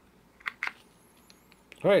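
Two short clicks, a fraction of a second apart, about half a second in, as an 18650 battery is pushed down into a metal box mod's battery bay.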